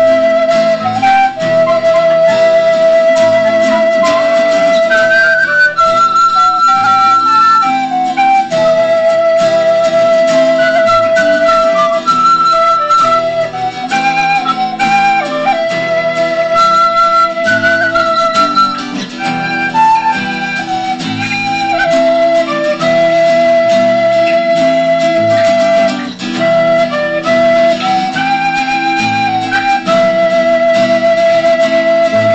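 Recorders playing a slow tune together with long held notes, split into parts a high one and a lower one, as the players divided the octaves between them. An acoustic guitar plays along underneath.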